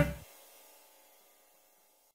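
The closing chord of a blues band with piano, guitar, bass, harmonica and drums, struck hard just before and dying away within the first half second. After that there is near silence.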